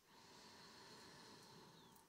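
Faint, steady inhalation through the nose in Ujjayi breathing, a soft hiss from the lightly constricted throat.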